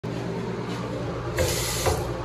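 Bathroom sink faucet running into a wall-hung porcelain basin, a short spell of water spray starting about a second and a half in, over a steady low hum.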